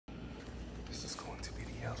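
A soft, whispery voice begins to speak near the end, over a steady low background hum.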